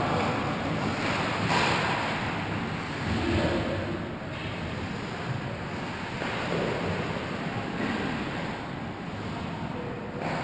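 Ice hockey skates scraping and gliding on the rink ice, heard as a steady noisy rush with a couple of louder swells in the first few seconds. It grows a little quieter after about four seconds.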